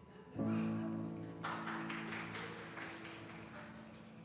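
Live band music: a sustained chord from the keyboard instruments is struck about half a second in, then a burst of noisy, rattling sound comes in about a second later and fades away.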